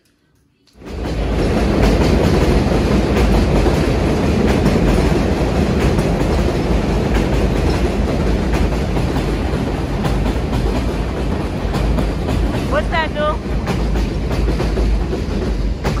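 A train passing close by: a loud, steady rumble that starts about a second in and keeps going. A short bit of a voice comes through it near the end.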